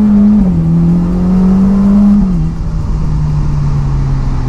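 Ferrari Portofino M's 3.9-litre twin-turbo V8 pulling under acceleration, its note climbing and then dropping as the dual-clutch gearbox upshifts, about half a second in and again just after two seconds. After the second shift it holds a lower, steady note.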